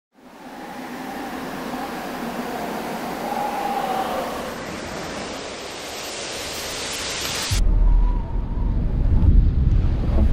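A swelling rush of wind-like noise, with faint wavering tones in it, that cuts off suddenly about seven and a half seconds in and gives way to a deep rumble of thunder.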